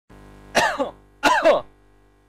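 A man clears his throat twice, two short voiced coughs falling in pitch and about 0.7 s apart, over a faint steady hum.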